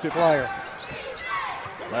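Basketball game court sound from a TV broadcast: a ball bouncing on the hardwood against a low arena background, after a commentator's single word at the start.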